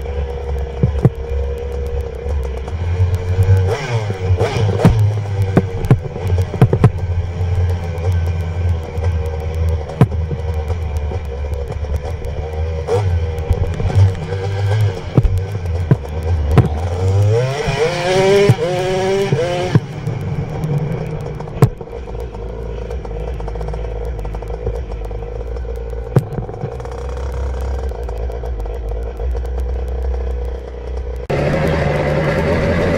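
Dirt bike engine running while riding a bumpy dirt trail, with frequent clattering knocks from the rough ground. About seventeen seconds in, an engine revs up in rising pitch for a couple of seconds, then a steadier, lower engine sound runs on to the end.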